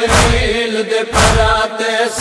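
Noha recitation: a chanted male vocal line, held and wavering, over a heavy, steady low beat about once a second.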